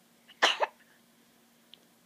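A single short cough in two quick bursts, a little under half a second in.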